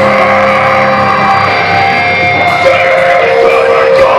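Live rock band playing loudly, with electric guitars and drums.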